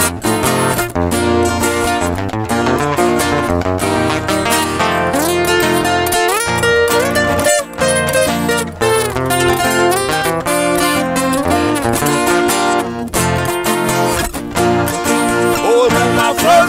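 Instrumental interlude of a moda de viola: a ten-string viola caipira and an acoustic guitar play together, with quick plucked runs and a few sliding notes.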